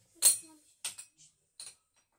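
A short run of light clinks and rattles as a cap is hung on a wardrobe door: one sharp clack just after the start, then a few smaller taps over the next second and a half.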